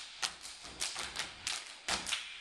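A step team stepping: a quick, uneven run of sharp hand claps, slaps and foot stomps, about eight or nine strokes in two seconds.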